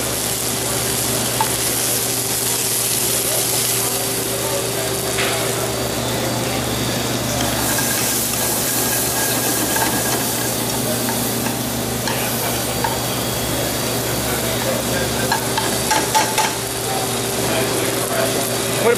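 Sable fish (black cod) fillets and long beans, enoki mushrooms and scallions frying in a hot sauté pan, a steady sizzle, with a steady low hum underneath.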